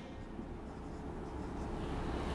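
Felt-tip marker writing numbers on a whiteboard: a faint, soft scratching.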